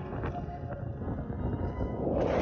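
Wind buffeting the microphone over the steady noise of a boat at sea.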